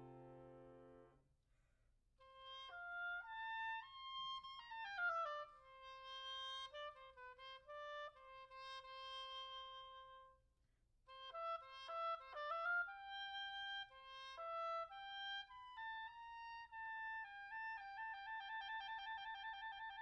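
Solo clarinet playing an unaccompanied passage: a rising run to a long held note, a quick descending run, a brief pause, then more phrases ending in a long trill.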